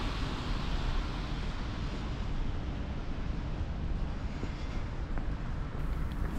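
Steady outdoor city noise, with a low rumble of distant traffic.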